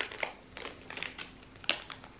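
A small mystery ornament package being opened by hand: faint crinkling and rustling with scattered small clicks, and a sharper click near the end.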